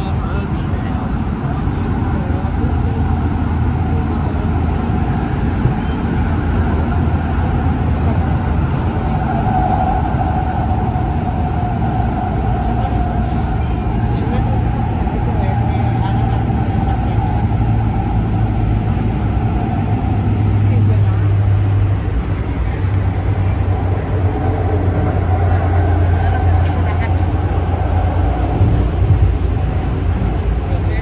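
Interior of a Kinkisharyo P3010 light rail car running at speed: a steady, loud low rumble from the wheels and running gear, with a steady hum over it. The rumble's tone shifts about two-thirds of the way in.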